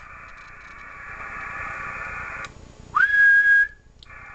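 Steady band of hiss from the radio that cuts off about two and a half seconds in. Then a person whistles a single note into the microphone, sliding up and held level for under a second, as a makeshift test tone to drive the Icom IC-7000's single-sideband transmit output.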